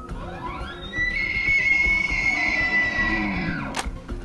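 A bull elk bugling: a rising glide into a high, held whistle lasting about two and a half seconds that drops off near the end. Guitar music plays underneath.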